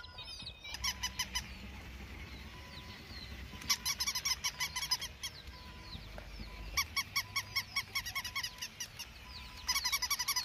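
Waterfowl calling in rapid runs of short, pitched notes, about seven a second, in four bursts. Faint bird chirps sound in the gaps.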